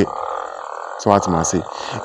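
A man's voice says one short word about a second in, over a steady background hum.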